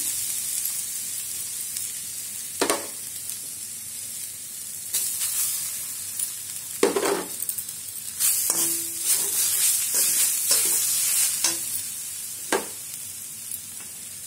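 Freshly grated raw coconut dry-roasting and sizzling in a steel kadhai as the coconut's own water cooks off, with a steel spatula scraping and stirring through it every second or two, the strokes coming closer together a little past halfway.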